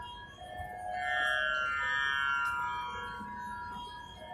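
A steady musical drone of several held notes, with soft tones gliding up and down over it through the middle.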